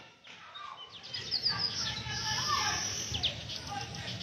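Birds chirping in the background, short high chirps coming on and off over a steady outdoor hum of ambient noise.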